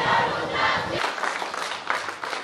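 A crowd of schoolchildren shouting together.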